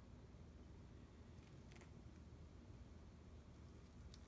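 Near silence: room tone, with two faint ticks about a second and a half in.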